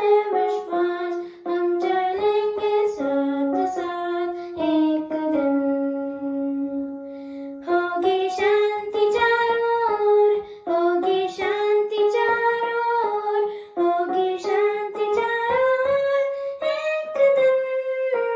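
A boy singing a song while accompanying himself on an electronic keyboard, the melody moving in steps and holding one long note about five seconds in.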